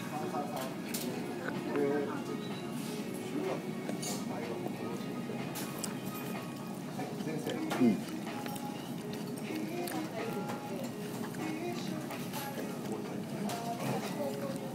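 Background music playing in a restaurant with faint voices, and a man's short 'mm' as he tastes his food about eight seconds in.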